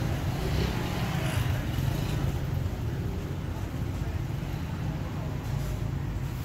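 Steady low background rumble, with faint voices in the first couple of seconds.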